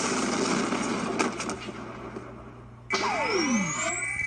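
Cartoon energy sound effects: a loud rushing noise of crackling electrical energy with a couple of sharp cracks about a second in, fading somewhat. About three seconds in comes a sudden energy-beam blast with a falling swoop, a rising whine and a steady high tone.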